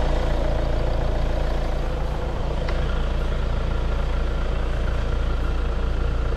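2020 Hyundai Tucson's diesel engine idling steadily.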